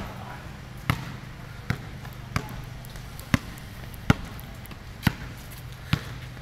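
A basketball bouncing on a concrete court: seven sharp bounces, roughly one a second, over a steady low hum.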